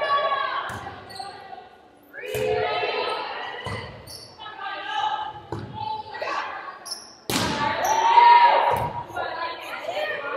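A volleyball rally in a gym: the ball is struck about six times in turn, each hit a sharp smack that echoes in the hall. Players' and spectators' voices rise between the hits, loudest in the last few seconds.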